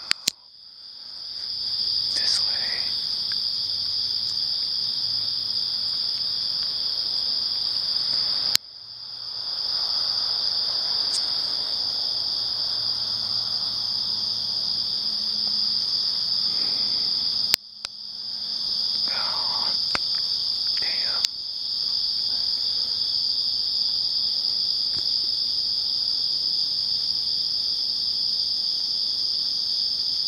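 A steady, continuous high-pitched chorus of night insects such as crickets. It cuts out abruptly with a click three times and fades back up over a second or two each time.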